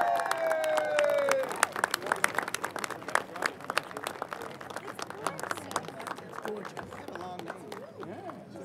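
A crowd applauding, with many sharp claps that thin out and fade over the last few seconds. It opens on the end of an announcer's long drawn-out word over a loudspeaker.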